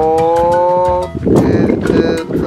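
A man's long, drawn-out "ohh" exclamation, its pitch slowly rising, held for about a second and then breaking into a rougher, noisier sound. Background music with a steady beat runs underneath.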